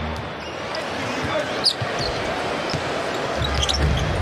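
A basketball being dribbled on a hardwood arena floor over the steady noise of a large crowd, with a few short high sneaker squeaks.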